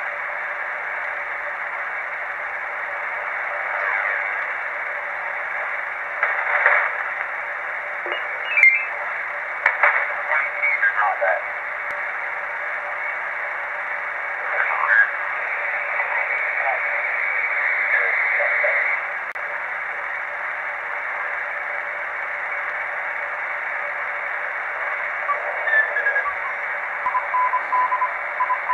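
uBitx HF transceiver's receiver audio in lower sideband, tuned up the 80 m band: a steady, narrow-band hiss of band noise with brief snatches of garbled sideband voices and whistles passing as the dial moves, and a steady whistle near the end. The band is free of AM broadcast-station breakthrough now that a high-pass filter is fitted in the receive antenna line.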